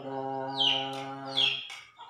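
Two short, high bird chirps, each falling in pitch, about half a second and about a second and a half in, over a man's drawn-out, steady-pitched hesitation sound.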